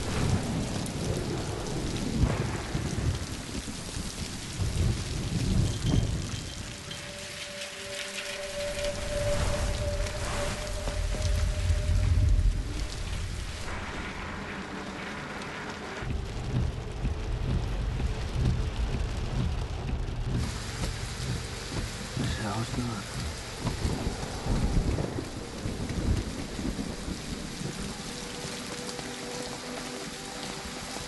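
Heavy storm rain pouring down steadily, with low rolls of thunder swelling up several times.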